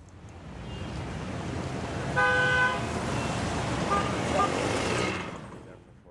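Road traffic noise that swells up and then fades away. A car horn sounds once for about half a second, about two seconds in, and a couple of short, fainter horn toots follow around four seconds.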